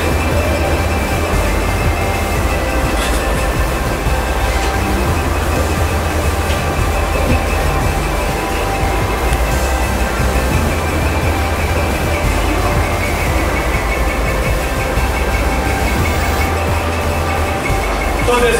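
A steady, loud low rumble of background noise with an even hiss above it, unbroken throughout.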